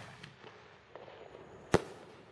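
A consumer reloadable firework artillery shell bursting in the air: one sharp bang near the end, after a few faint pops.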